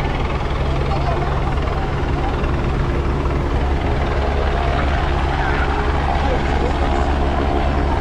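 Helicopter flying low overhead, its rotor and engine a steady low drone, with a beach crowd's chatter underneath.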